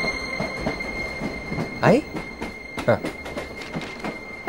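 Passenger train running, heard from inside the carriage: a steady rumble of wheels on track with a thin, steady high whine.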